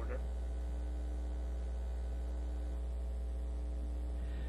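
Steady low electrical mains hum, unchanging throughout, with no other sound over it.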